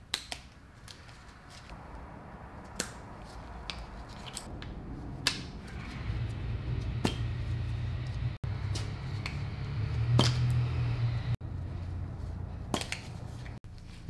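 Scattered small clicks and taps of gloved hands working the plastic wiring clips and connectors on the side of an automatic transmission. A low hum sets in about halfway through and is strongest near the end.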